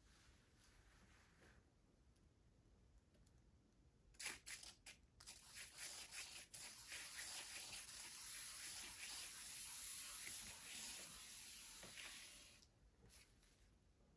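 Faint, even rasping whir of a hand-spun board carrying a wet paint-poured canvas, spun by hand to fling the paint outward. A few sharp clicks come about four seconds in as it is pushed, then the whir runs for several seconds and fades as the spin slows.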